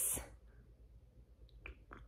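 The hissing end of a spoken word, then quiet room tone with a few faint, short clicks near the end as a glass tumbler is lifted to drink.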